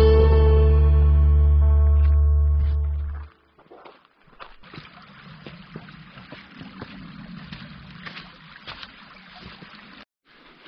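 A guitar backing track ends on a held chord that fades out about three seconds in. After a short gap, footsteps crunch on loose stones and gravel, with many small clicks over a steady hiss.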